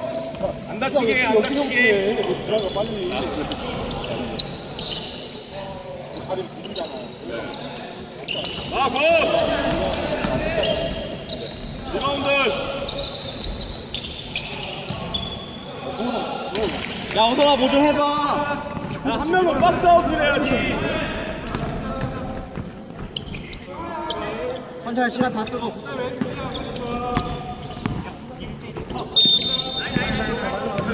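A basketball bouncing on a hardwood gym floor during a game, with players shouting to each other, in a large sports hall.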